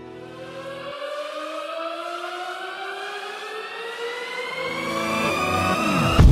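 A synthesized riser: one pitched tone with a stack of overtones gliding slowly and steadily upward in pitch, growing louder throughout. A low rumble comes in under it in the last second or so.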